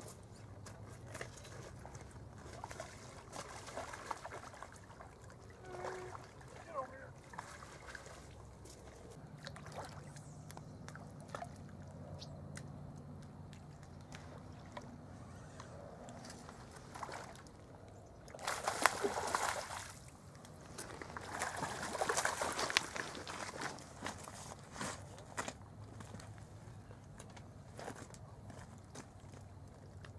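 Water splashing and sloshing at the shallow river edge as a hooked pink salmon (humpy) is played in close to shore, with two louder bursts of splashing about two-thirds of the way through.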